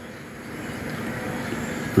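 Steady background noise of a pool hall, an even rushing hum that slowly grows a little louder, with no ball strikes heard.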